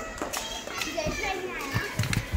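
Young children's voices talking and calling out, high-pitched, with a couple of short knocks near the start.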